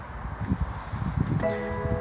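Electronic chime from the BMW 4 Series' dashboard system as the iDrive wakes up: a steady tone with several pitches at once, starting about one and a half seconds in, over faint rustling.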